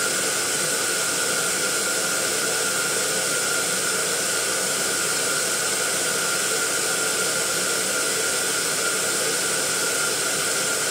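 Electric air pump running steadily as it inflates a row of latex balloons: an even rushing hiss with a thin constant whine and no pops.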